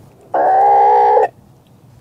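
A chicken gives one loud, steady-pitched call lasting about a second. It starts a third of a second in and cuts off sharply.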